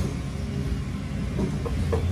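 A steady low rumble of background noise, growing a little stronger near the end, with a couple of faint light ticks.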